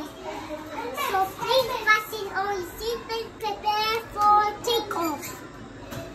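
A young child's voice in a sing-song, chant-like talk with some held, wavering notes, like a play pilot's cabin announcement; it stops about five seconds in.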